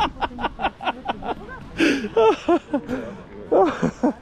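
A man laughing heartily: a fast, even run of short 'ha-ha' pulses for about the first second, followed by further laughing and talking voices.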